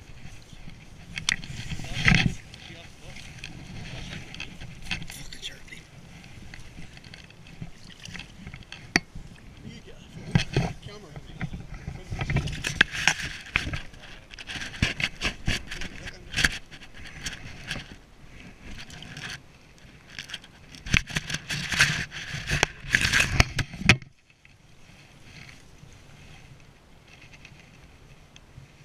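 Close, irregular rustling and scraping of a landing net, reeds and clothing as a fish is handled in the net at the water's edge, in bursts of clicks and scuffs that go quieter a few seconds before the end.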